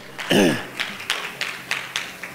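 A man clears his throat, followed by a string of irregular sharp taps, about six in a second and a half.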